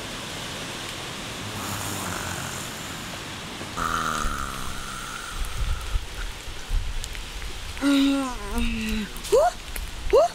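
A steady hiss for the first few seconds, then a boy's voice: a moan or hum that slides down in pitch, more murmured vocal sounds, and short rising "ooh" calls near the end.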